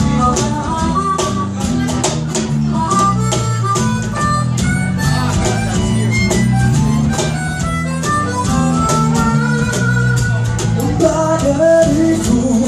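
Live acoustic band playing an instrumental passage: a harmonica solo of held and bent notes over strummed acoustic guitars, electric bass and a cajón keeping a steady beat.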